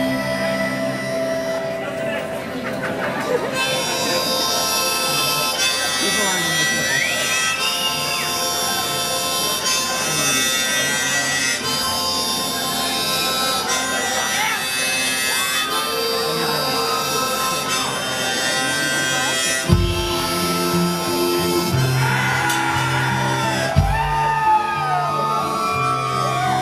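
A live band plays a song's instrumental intro: a harmonica holds long notes over strummed acoustic guitar. About twenty seconds in, a deep bass line and low drum hits join.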